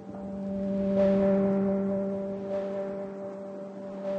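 Ambient background music: a sustained low drone of steady bell-like tones that swells about a second in and then slowly fades.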